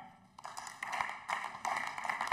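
Hand-clapping applause from the members in a parliament chamber, beginning about half a second in and growing fuller.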